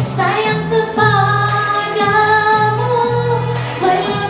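A woman singing a Malay song into a microphone over amplified backing music, holding long wavering notes.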